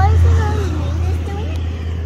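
A loud, steady low motor hum, easing slightly after about half a second, with soft talking over it.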